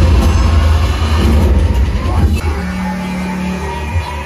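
Action film background score playing loudly through a home theater sound system, heard in the room. Deep, heavy bass carries the first two and a half seconds, then a held low note sounds for about a second.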